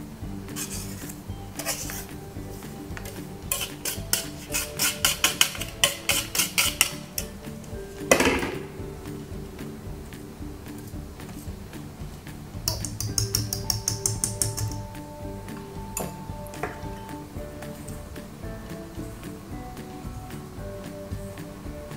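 Wire whisk clicking quickly against a stainless steel mixing bowl as flour is mixed in. It comes in two spells, about four seconds in and again near the thirteen-second mark, over background music.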